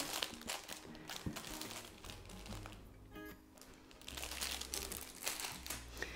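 Soft crinkling of the clear plastic sleeves on A6 planner covers as they are handled and lifted out of a box, with faint music underneath.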